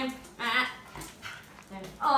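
A pet dog giving two short high-pitched cries, one right at the start and another about half a second in.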